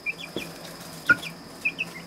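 Cornish Cross broiler chicks peeping: a few short, high chirps in two small clusters, with a faint steady high whine behind them.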